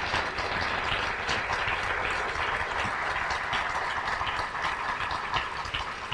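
Audience applause: many hands clapping in a steady, even patter.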